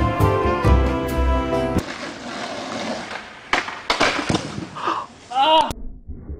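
Music with a strong beat and heavy bass that stops abruptly about two seconds in. It is followed by a noisy stretch with three sharp knocks and a short voice cry near the end.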